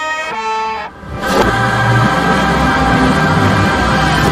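Hip-hop album music played in reverse. Held instrument notes step from pitch to pitch for about the first second, then after a brief dip a dense, bass-heavy passage swells up and carries on.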